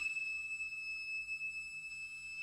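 Background music: one high note, pure and ringing, held steadily.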